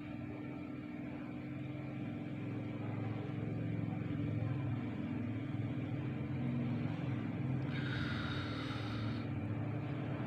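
Low steady background rumble with a constant hum, a little louder after the first few seconds, and a brief higher-pitched hiss about eight seconds in.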